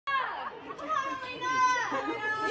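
Teenage girls cheering and yelling encouragement, with several long, high-pitched yells.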